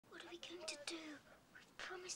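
Speech only: a girl talking quietly.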